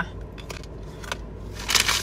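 Chewing a ripe plantain chip: a few soft crackles and mouth clicks, then a short breathy rush near the end.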